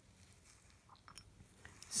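Faint, scattered light clicks from about a second in, of an acrylic nail brush against a glass dappen dish of monomer liquid as it is dipped and wiped.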